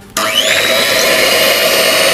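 Electric hand mixer switched on, its whine rising as the motor comes up to speed and then running steadily as the beaters whip cream in a plastic bowl.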